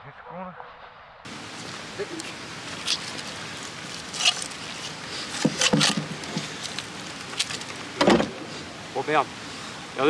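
Rusty scrap iron being handled on and pulled off a fishing magnet: a series of irregular sharp metal clinks and knocks.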